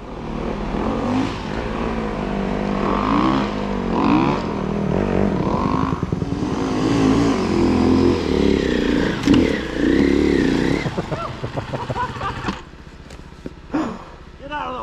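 Snow bike engine running and revving as the bike rides through deep snow, its pitch rising and falling with the throttle. The engine sound drops away sharply near the end.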